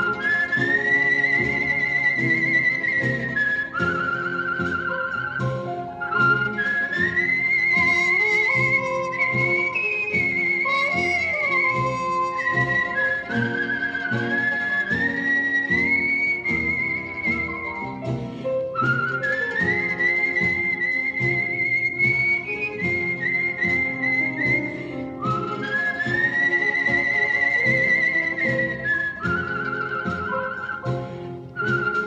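A professional whistler's solo: a high whistled melody with a wide vibrato, in phrases of long held and gliding notes, over a band accompaniment.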